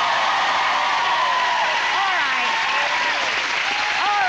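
Studio audience applauding, with voices over the clapping.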